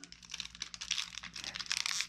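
Plastic wrapping on a block of modelling clay crinkling as it is cut with a knife and pulled open: a dense run of small rapid crackles, louder in the second half.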